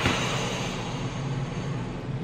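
Steady hiss of background noise with a low hum beneath it, no distinct event.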